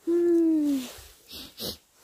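A person's voice: one hummed or 'ooh'-like note, about a second long and falling in pitch, followed by a short, fainter breathy sound.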